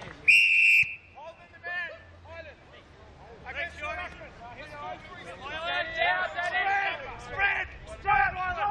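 An umpire's whistle, one short, shrill blast, with men shouting on the field around it.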